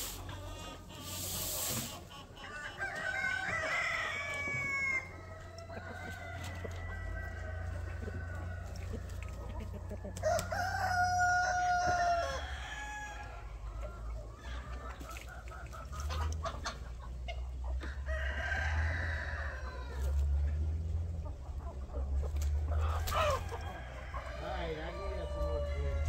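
A flock of chickens clucking and calling, with a rooster crowing in a long held call about ten seconds in, over a steady low rumble.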